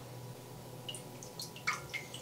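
A few faint drips and light clicks as wort is dosed with lactic acid and stirred with a small spoon in a stainless steel brew kettle, over a low steady hum.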